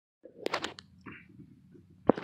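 Dead silence at first, then a man's voice says a single word, with a few faint clicks and a brief rustle after it.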